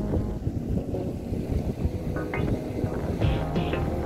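Wind buffeting the microphone in a rough low rumble, with background music underneath that comes through more clearly near the end.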